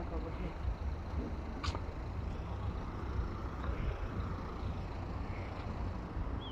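Steady low rumble of street noise with faint voices in the background. There is one short sharp click about two seconds in.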